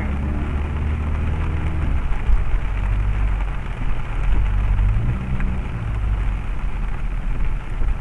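Rain pattering on a car's windshield and roof, heard from inside the cabin, over the low steady drone of the engine and wet tyres.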